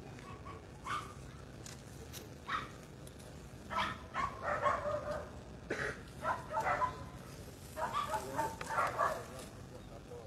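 Indistinct voices of people talking, in three short spells in the second half, with a few short, sharp calls in between.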